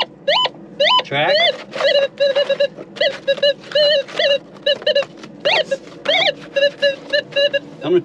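Minelab metal detector sounding a rapid, busy run of short beeps and chirps, some at one steady pitch and some sliding up and down, as its coil sweeps the mine floor. The constant chatter is a sign that the sensitivity is set a little too high.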